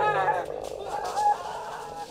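High-pitched vocal cries, each wavering in pitch: one at the start and another about a second in, over a low hum.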